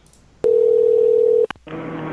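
A telephone tone: one steady, single-pitched tone about a second long, starting and stopping with a click, followed by faint phone-line hum.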